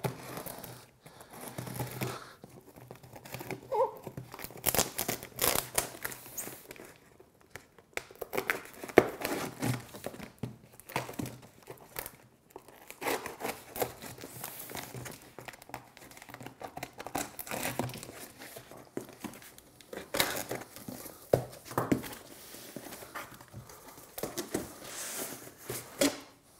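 Scissors slicing and tearing packing tape on a cardboard box, with cardboard and tape crinkling in irregular bursts and sharp clicks as the box is handled and its flaps pulled open.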